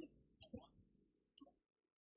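Near silence, with a few faint short clicks.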